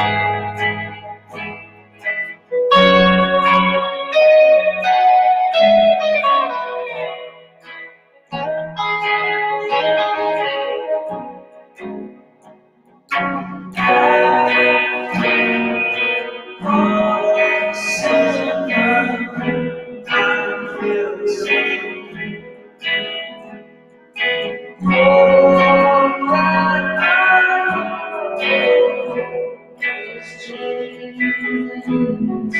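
Indie psych-rock band playing a gentle instrumental passage live: electric guitars through effects over keyboard, in phrases with a short pause about twelve seconds in.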